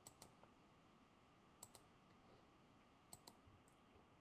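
Near silence broken by faint, sharp clicks in close pairs: one pair at the start, one about a second and a half in, and one about three seconds in.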